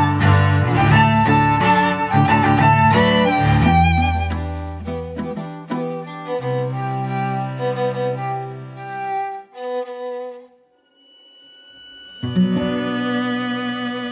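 String quartet music, violins and cello: quick, short notes at first, then held notes, fading out about ten seconds in and coming back in strongly a second or so later.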